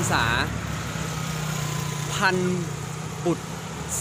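Steady low hum of an engine running, under a man talking in Thai.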